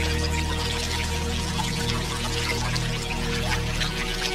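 Ambient relaxation music of sustained low notes, layered over the steady trickle and splash of running water in a stream.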